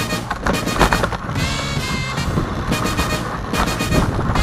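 Dog sled running over snow behind a team of Siberian huskies: a steady scraping rumble from the runners, with irregular knocks and rattles from the sled.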